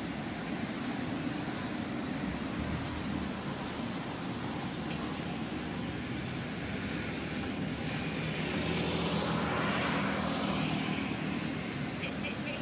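Street traffic at an intersection: cars running steadily. A brief high-pitched squeal comes about six seconds in, and a vehicle passes, swelling louder and fading, near the end.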